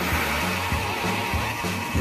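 Background music with a bass line moving in short low notes.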